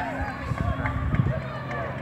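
Speech: a listener's voice answering a question, too faint or indistinct for the transcript, over a steady low hum from the surroundings.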